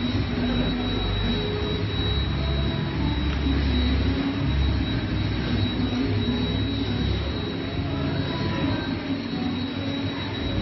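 Steady mechanical running noise: a low rumble that swells and eases, with a thin steady high whine above it.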